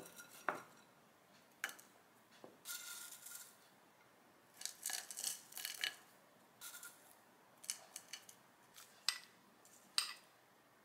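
Homemade cinnamon granola being pinched from a glass container and dropped into a wooden bowl of thick Greek yogurt: irregular crisp rustles and crackles of the clusters, with a few sharp clicks.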